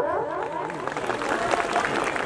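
Audience applauding: many hands clapping together in a steady, even spread.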